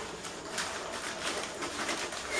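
Glossy plastic sheet rustling and crackling under a hand, with a bird cooing in the background.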